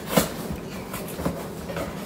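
Cardboard shipping box being handled and opened by hand: a few short rustles and scrapes of cardboard, the loudest just after the start.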